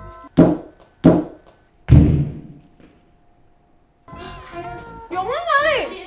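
A rock-hard Xinjiang dalieba loaf is struck against a whole watermelon three times, giving three dull thunks under a second apart. The third is the heaviest and deepest, and the melon does not break.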